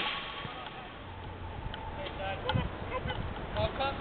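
Players' shouts and calls on a five-a-side football pitch, short and faint, with a single knock about two and a half seconds in.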